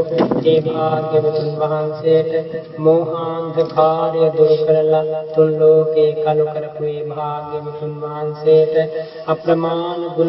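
Buddhist devotional chanting: a voice chants verses in long melodic phrases over a steady held drone.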